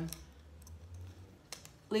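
A short pause in speech: low steady room hum with a single light click about one and a half seconds in, just before talking resumes.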